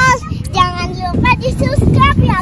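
A young girl's high-pitched voice, laughing and squealing in short gliding bursts, over a low rumble of wind on the microphone.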